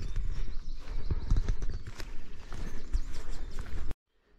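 Walking noise picked up by a GoPro Hero 10's built-in microphone: irregular footfalls and handling knocks over a low wind rumble. The sound cuts off suddenly just before the end.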